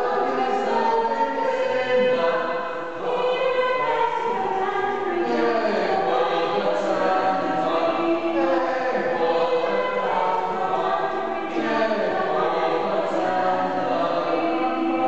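A small mixed-voice a cappella ensemble of six, four women and two men, singing a madrigal-style country dance in close harmony, without a break.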